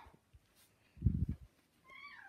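A dull, low bump about a second in, then a domestic cat starts a faint, short meow near the end, its pitch falling.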